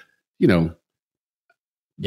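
A man's voice saying "you know", followed by more than a second of dead silence between speakers.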